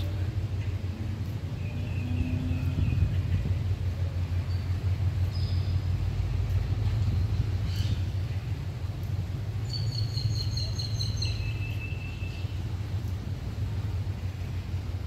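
Steady low rumble of wind buffeting the microphone, with thin whistled bird calls about two seconds in and again around ten to twelve seconds, the later ones stepping down in pitch.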